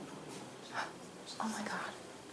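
Hushed, whispered voices: two short whispers, one a little under a second in and another about a second and a half in.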